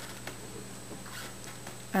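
Faint scraping of a two-prong twist-up cork puller's metal prongs being rocked down between a synthetic cork and the glass bottle neck.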